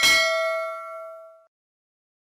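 A single bell-like ding struck once, its tone ringing and fading away over about a second and a half.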